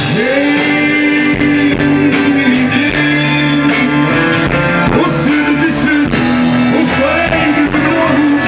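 Live rock band playing: electric guitars with a horn section of trumpet and trombone, one long note held over the first five seconds or so.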